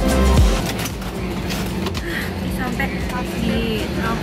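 Dance music with a steady beat that stops about half a second in, giving way to the steady hum of an airliner cabin with faint voices.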